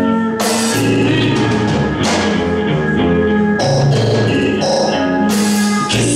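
Live band music: bowed violin and electric guitar over a drum kit, with loud cymbal crashes about half a second in, about two seconds in, and near the end.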